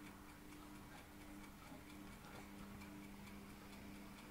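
Near silence: room tone with a faint regular ticking and a low steady hum.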